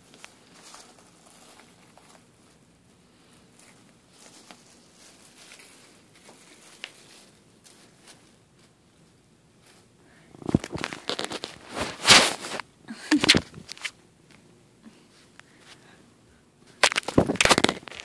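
A cat's fur and face rubbing against the phone's microphone, giving loud rubbing and crackling bursts about halfway through and again near the end. Before that, faint crinkling from the wrapper the cat is playing with.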